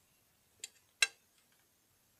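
Two short clicks while a meerschaum tobacco pipe is being relit with a lighter. The first is fainter, and the second, about a second in, is louder and sharper.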